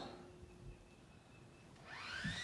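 Near silence with faint steady room tone. Right at the end a power tool starts up with a rising whine.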